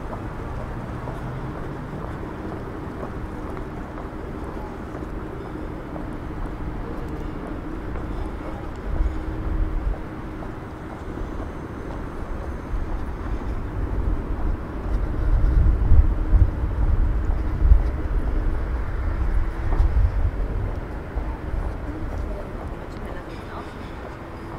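Outdoor city-square ambience: distant voices and traffic over a steady faint hum, with a low rumble that swells briefly about nine seconds in and louder through the middle and latter part.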